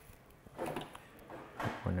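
A man speaks briefly while a metal wire-crimping tool is picked up and handled, with a few light clicks.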